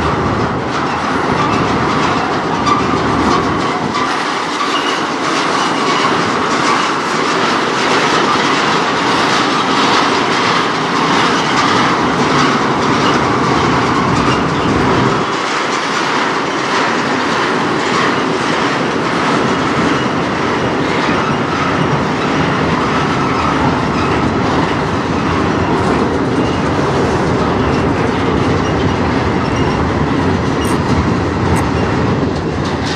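Freight train cars, flatcars loaded with truck frames and then a coil car, rolling past close by: a steady, loud rumble of steel wheels on rail, with repeated clicking over the rail joints.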